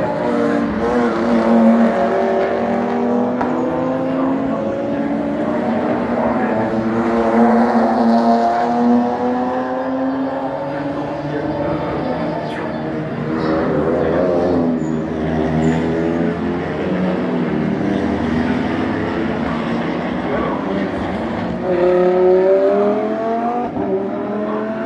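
Racing car engines at full throttle, several notes overlapping as cars pass. The pitch climbs and drops again and again with gear changes, and one engine rises steeply near the end as a car accelerates.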